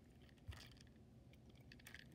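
Near silence with a few faint, short clicks and taps from a plastic toy train engine being handled. The most marked click comes about half a second in.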